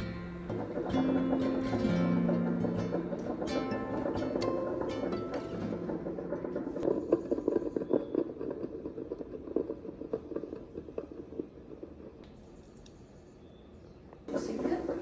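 Soft background music with plucked notes over the first half, fading out. Then a countertop coffee maker's hot coffee dripping and trickling onto ice cubes in a glass, an irregular run of small ticks and splashes that grows quieter near the end.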